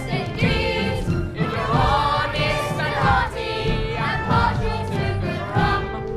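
A chorus of boys singing a stage-musical song together, with musical accompaniment underneath.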